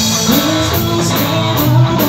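Live band music, loud and steady, with an electric guitar prominent.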